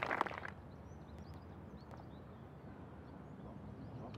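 Faint bird chirps, short and high, scattered over a quiet outdoor background.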